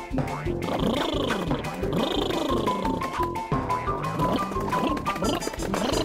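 Cartoon soundtrack music with a steady beat, under a character's wordless vocal sounds that slide up and down in pitch.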